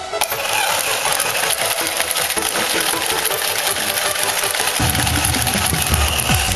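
Battery-powered coin-eating dog bank toy running its small motor, with a rapid plastic gear clatter as the dog's head dips into the coin bowl.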